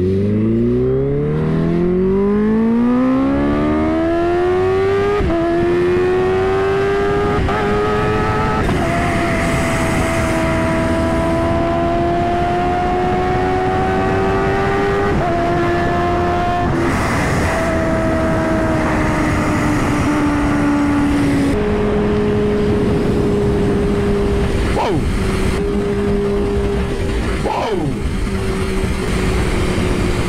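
Supercharged inline-four engine of a Kawasaki Ninja H2 pulling hard from low speed, its pitch rising steadily for about five seconds, then running at cruising revs with several shifts in pitch. Steady wind rush on the camera microphone throughout.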